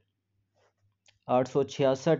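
Near silence with a faint click just after a second in, then a man starts speaking.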